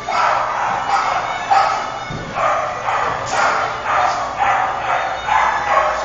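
Dogs barking repeatedly during play, about two barks a second.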